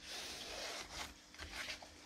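Hands rubbing and handling the suede leather lining on the back of a kydex-and-leather pistol holster: a faint scuffing rustle.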